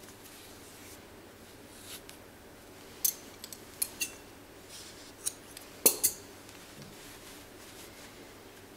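Scissors snipping yarn: about six sharp metallic clicks between three and six seconds in, the loudest two close together near the end, as a finished crocheted hat's yarn tails are trimmed.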